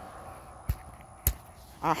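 Two sharp, short clicks a little over half a second apart, over a faint background hush.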